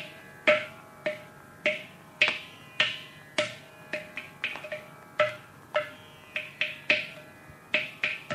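Mridangam played in a Carnatic percussion passage in Adi tala: sharp strokes about twice a second, each ringing at the drum's tuned pitch and dying away, with a few quicker, softer strokes between them.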